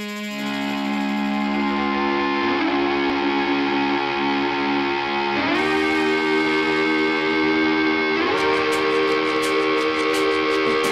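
Instrumental intro of a song: sustained chords that change about every three seconds, with light ticking percussion coming in near the end.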